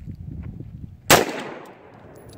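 A single AR-15 rifle shot about a second in: one sharp crack whose echo dies away over about half a second.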